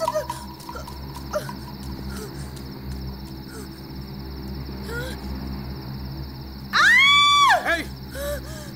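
Film soundtrack ambience: a steady low drone with faint scattered cries. Near the end a single loud, high-pitched shriek rises, holds for under a second, then falls away.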